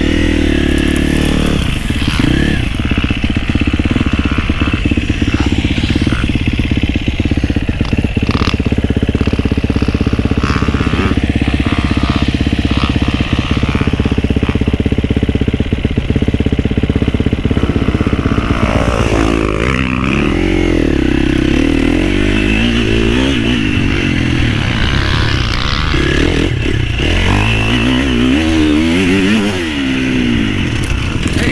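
Husqvarna FC350 four-stroke single-cylinder dirt bike engine running hard under load, heard from on board. Through the first half it holds fairly steady; in the second half its pitch rises and falls again and again as the throttle is worked through turns.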